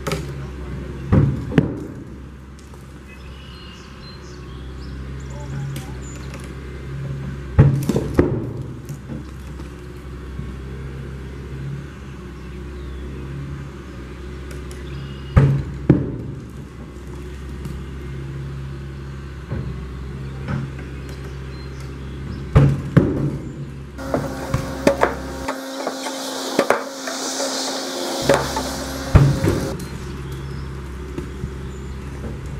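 Excavator engine running steadily while its wrecking ball strikes the concrete silo wall, giving loud sharp knocks in pairs about every seven seconds.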